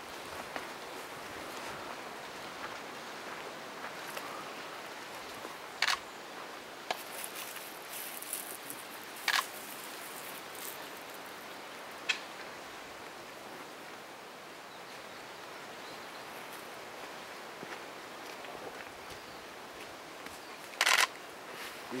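Faint, steady outdoor background hiss with a few scattered sharp clicks, the loudest a quick double click near the end.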